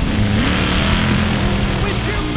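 Sand drag racing engine revving hard on a run. Its pitch rises early on, then holds steady, with a loud noisy swell through the middle.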